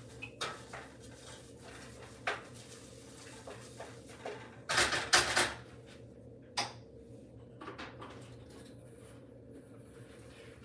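Light kitchen clatter of a wooden spoon knocking against a stainless steel pot of herbs and water, a few scattered knocks with a louder clatter about five seconds in.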